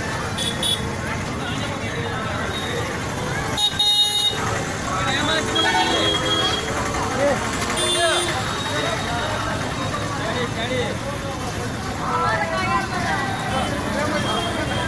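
Street crowd chatter over traffic noise at a jammed road junction, with a loud short vehicle horn blast about four seconds in and a shorter horn toot near eight seconds.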